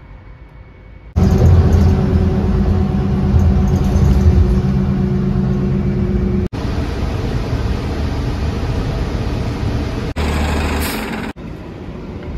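Faint room tone, then about a second in a hard cut to a loud, steady bus engine drone with road noise. Further abrupt cuts switch to other stretches of traffic and road noise around the middle and near the end.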